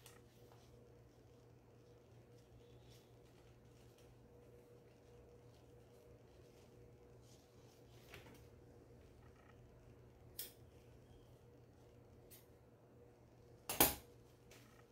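Quiet handling of a paper-backed fabric strip being laid on a quilted panel, with a steady low hum under it and a few faint soft clicks. A short sharp click of scissors comes near the end and is the loudest sound.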